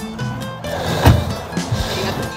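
Music playing throughout, with a single car door, a minivan's front door, being shut about a second in.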